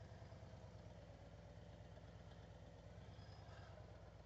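Near silence, with only a faint, steady low hum of a Harley-Davidson Street Glide's V-twin engine running at near idle as the bike creeps through a slow U-turn on the clutch friction zone.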